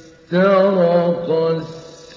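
A male reciter chanting the Quran in the melodic mujawwad style. One drawn-out phrase of held, ornamented notes begins about a third of a second in and fades away near the end.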